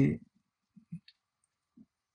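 A man's spoken phrase ends, then a quiet room with a few faint, short clicks and knocks, about one second in and again near the end.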